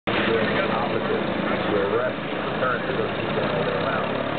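The two engines of a 1914 Curtiss America flying boat running steadily as it taxis on the water, with people talking nearby over the drone.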